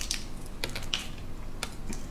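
Fingers picking and peeling the shell off a small boiled egg: about five short, sharp shell crackles over two seconds.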